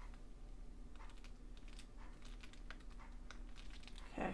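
Faint, quick clicks and rustles of paper as hands press and smooth the glued pages of a handmade paper journal, thickest from about a second in. A faint steady hum lies underneath.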